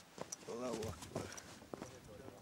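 A voice speaking briefly and indistinctly amid footsteps and a few sharp knocks on a snowy, muddy track.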